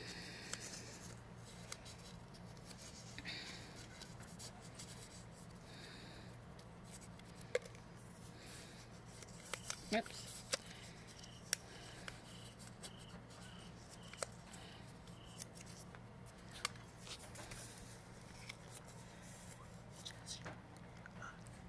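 Small slips of paper being folded and creased by hand, with light rustling and occasional crisp clicks, over a faint steady low hum.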